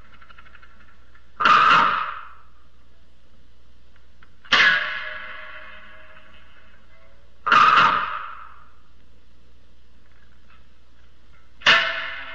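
Biwa struck hard with its plectrum: four sharp, separate strokes about three to four seconds apart, each ringing out and fading over about a second.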